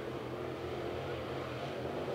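A field of dirt late model race cars with 602 crate V8 engines running at racing speed around the oval, heard as one steady blended engine note.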